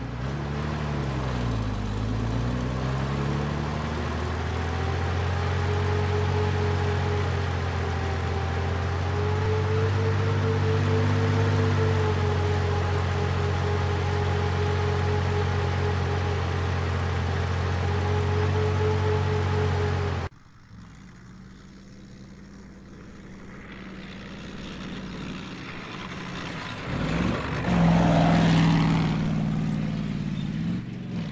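Bulldozer engine running steadily, its pitch dipping and recovering in the first few seconds. About two-thirds of the way through it cuts abruptly to a fainter, more distant engine that grows louder toward the end.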